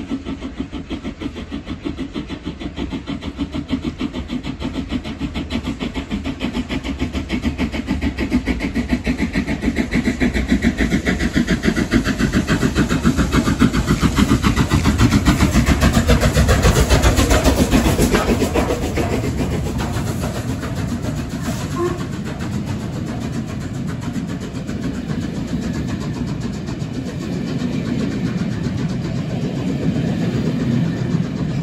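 LMS Royal Scot class steam locomotive 46100, a three-cylinder 4-6-0, working hard as it approaches and passes. Its rapid exhaust beats grow louder to a peak about halfway through and fall in pitch as the engine goes by. The running rumble of its coaches follows.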